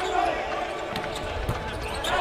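Volleyball struck during a rally: a few sharp hits on the ball, clearest about a second in and again half a second later, over steady arena noise.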